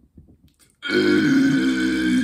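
A man's drawn-out growl through clenched teeth, starting a little under a second in and held for about a second and a half, with faint mouth clicks before it.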